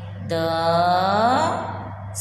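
A woman's voice drawing out one long syllable in a sing-song way, its pitch rising toward the end, as she sounds out a Gujarati number word for young children.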